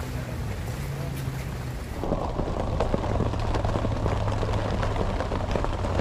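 Heavy rain pouring down, a dense hiss of drops with many sharp ticks of single drops striking close by; about two seconds in the downpour grows louder and heavier. A low steady hum runs underneath.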